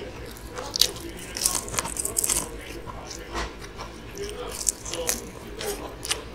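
Close-miked eating: crisp crunches and chewing as bites are taken from bone-in karaage (Japanese fried chicken). The crunching comes in clusters, thickest about one and a half to two and a half seconds in.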